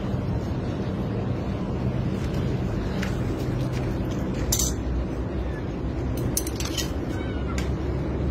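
Kitten meowing faintly while its head is stuck in a metal pipe, with a few sharp metal clicks as tools knock against the pipe, the loudest about halfway through. A steady low hum runs underneath.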